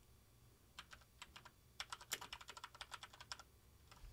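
Faint typing on a computer keyboard: a few scattered keystrokes, then a quick run of them from about two seconds in that stops shortly before the end.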